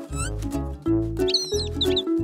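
Cheerful cartoon background music with bouncy bass notes, over which a cartoon bird gives high squeaky chirps: one short rising chirp near the start, then a quick wavering run of chirps in the second half.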